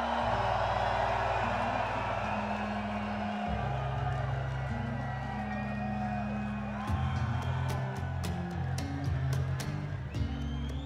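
Large festival crowd cheering and whooping over outro music with sustained low notes that shift pitch every few seconds. Scattered sharp claps come in during the last few seconds.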